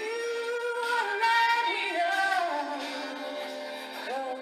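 A song with a woman singing long held notes that slide downward in pitch, without clear words.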